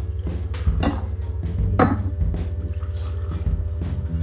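Brewed coffee poured from a glass carafe into small glass cups, with a few sharp clinks of glass, the loudest about two seconds in. Background music with a steady bass runs underneath.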